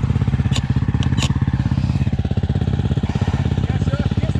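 Motorcycle engine idling with an even, rapid pulse, and two short sharp clicks about half a second and a second and a quarter in.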